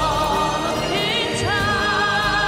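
Female solo voice singing with vibrato, rising to a long held high note about halfway through, over sustained orchestral and bagpipe accompaniment.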